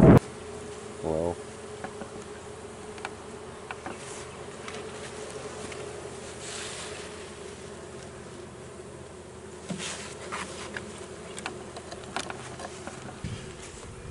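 Honey bees buzzing around an opened hive: a steady hum, with a few faint clicks over it.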